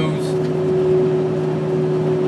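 Steady road and engine noise inside a van's cabin while driving at highway speed, with a constant low drone.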